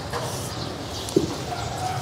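A bird calling over steady background noise, with a single click about a second in.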